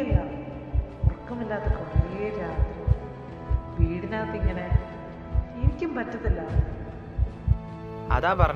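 Heartbeat sound effect: regular paired low thumps, a lub-dub a little under once a second, under soft music.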